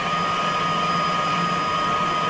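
A mechanical television machine's rotor of four LED strips spinning on its stepper motor, running steadily with a high, even whine over the whirr. The motor has been run up slowly and is nearing the 12.5 turns a second at which the strips draw a full 50 Hz picture.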